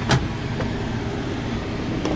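Steady low hum of a 2007 Toyota FJ Cruiser idling with its air conditioning running, heard from the open cargo area. A single short click sounds just after the start.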